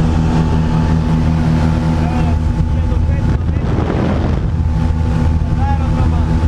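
Propeller engine of a small single-engine plane droning steadily, heard inside the cabin with wind noise, which swells briefly past the middle.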